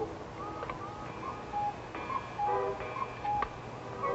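Cuckoo clock calling: a run of short two-pitch cuckoo notes, a higher then a lower, about every half second, with a couple of mechanism clicks.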